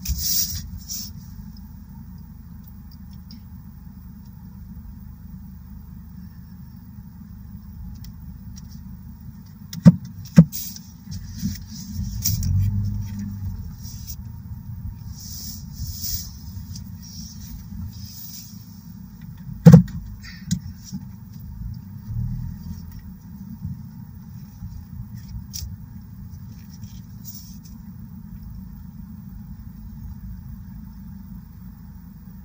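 Low steady rumble of an idling vehicle, swelling briefly a little after ten seconds in. Three sharp knocks cut through it: two close together about ten seconds in and a louder one near twenty seconds.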